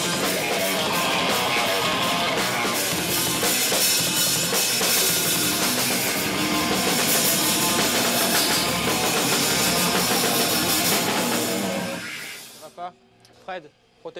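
Loud rock band playing in a rehearsal room, with drum kit and electric guitar, at a level put at 115 decibels with peaks of 140. The playing stops abruptly about twelve and a half seconds in.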